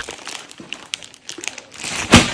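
Plastic poly mailer shipping bags crinkling as they are handled, with irregular crackles that grow louder toward the end.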